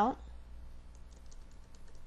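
Computer keyboard being typed on: a run of faint, irregular key taps.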